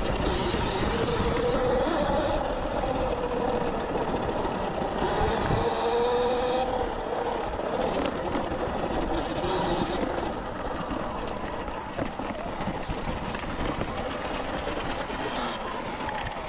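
Sur-Ron electric dirt bike with a 72-volt battery, its motor whine rising and falling in pitch as the rider speeds up and slows on the trail, over a steady rush of tyre and wind noise.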